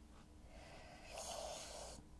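A woman's single breath close to the microphone, heard as a soft hiss lasting just under a second from about halfway in.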